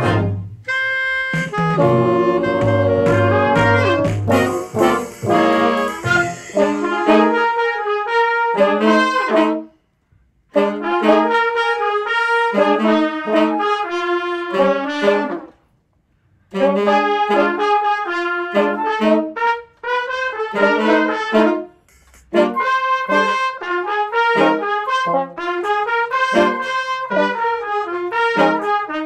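Student jazz band playing: trumpets, trombones, saxophone and flute in punchy ensemble phrases. The bass and low rhythm drop away about six seconds in, and the whole band stops dead for short breaks three times.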